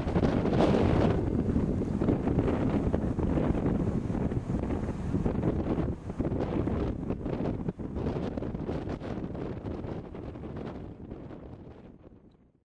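Gusty wind buffeting the camcorder microphone, a rough rumble that dies away over the last few seconds.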